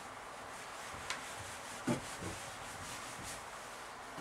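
Felt eraser wiping a whiteboard clean, a soft steady rubbing with a couple of light knocks against the board.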